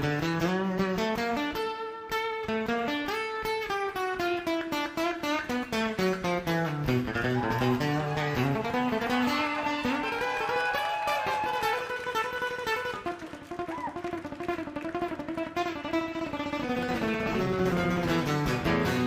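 Live acoustic band music led by a nylon-string acoustic-electric guitar playing a solo of quick single-note runs over a descending bass line. The playing eases off to a quieter passage about two-thirds of the way through.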